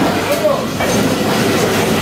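Busy meat-market din: overlapping voices and clatter, with a few short, sharp knocks.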